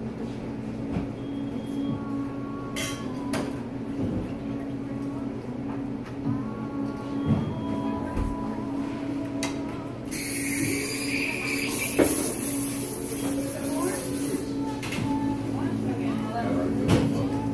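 Café room ambience: indistinct chatter and background music over a steady low hum, with occasional clicks and knocks. About ten seconds in, a hiss starts and runs for roughly four seconds before cutting off.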